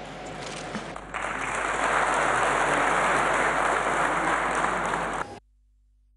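Audience applause in a hall, starting suddenly about a second in over a quieter background hiss. It cuts off abruptly a little after five seconds in, leaving near silence.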